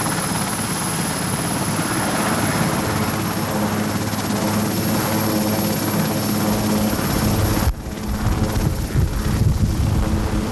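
Marine One, a Sikorsky VH-3 Sea King helicopter, running on the ground with its main rotor turning: a loud, steady rotor and turbine sound with a high whine. At about eight seconds in the sound suddenly turns to an uneven, gusty low rumble.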